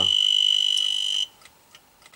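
Dosimeter alarm: a steady, high-pitched electronic tone that cuts off suddenly about a second in. It sounds because the dose rate from the old watch's luminous paint, about 5 mR/h gamma plus beta, is over the danger threshold.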